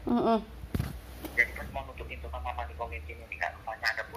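Speech coming through a mobile phone's speaker during a call, with a single knock just under a second in and a low hum underneath for a couple of seconds.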